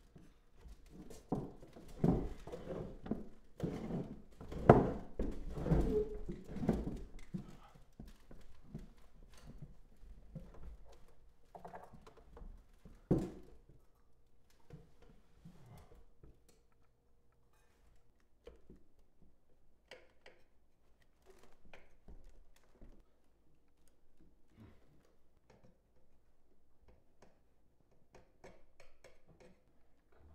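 A wooden chair knocking and creaking against the floor as a person tied to it struggles against the rope. The knocks come thick and loud for the first several seconds, with one loud knock a little before the middle, then fainter scattered clicks.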